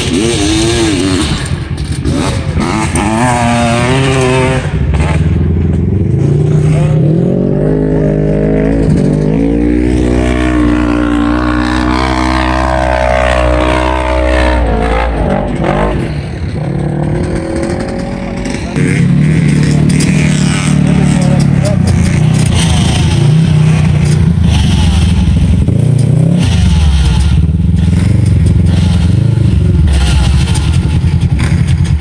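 Side-by-side UTV engines working off-road. An engine revs and pulls with its pitch climbing for several seconds in the middle, then a louder engine runs hard and steady through the rest.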